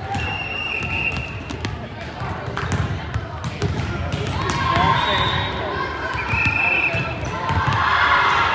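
Busy gymnasium din: many voices talking and calling out, with volleyballs bouncing and smacking on the hardwood floor in short sharp knocks, and a few brief high squeaks.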